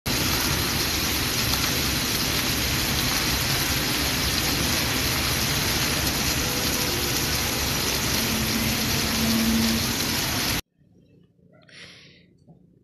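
Water jets of a ground-level splash-pad fountain spraying and splashing onto the paving, a steady hiss that cuts off abruptly near the end.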